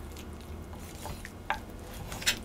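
Knife cutting raw goose leg meat away from the bone on a wooden cutting board: quiet wet slicing and handling with a few small knocks, the sharpest about one and a half seconds in.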